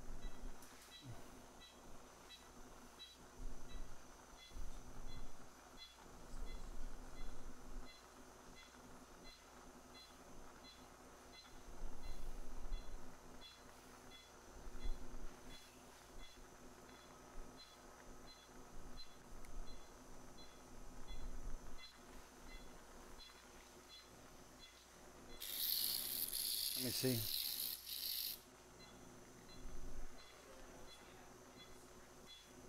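Operating-room sounds: faint, evenly spaced beeps from a patient monitor, with scattered knocks from instruments being handled. About 25 seconds in comes a burst of hissing that lasts about three seconds.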